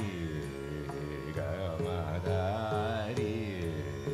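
Carnatic classical singing in raga Thodi: a male voice sustaining notes with wide, continuous pitch oscillations (gamakas) over a steady tanpura drone, with a few light drum strokes.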